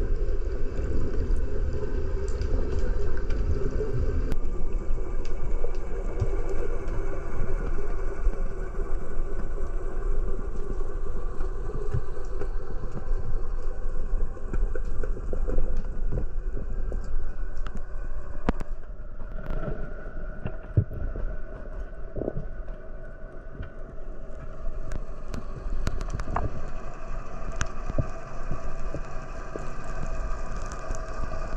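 Water noise around a swimmer's camera in the sea: a steady, muffled low rumble with scattered small clicks.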